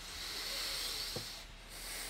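Soft breathing noise close to a microphone: a slow breath of air that swells and fades, then swells again near the end, with a small mouth click about a second in.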